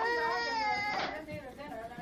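A toddler crying: one long, high cry held for about a second, then breaking off into shorter, weaker cries.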